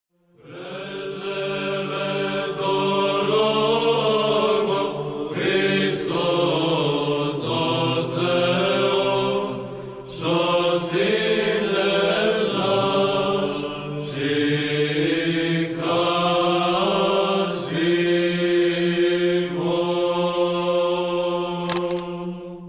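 Chanted vocal music: voices singing in long phrases over a steady held low drone, with a brief sharp click near the end.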